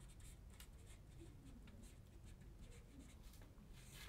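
Faint marker pen writing on a whiteboard: a string of short, light strokes as a word is written out.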